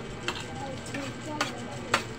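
Spoon and fork clinking and scraping against a plate while eating, with a few sharp clinks, the loudest in the second half.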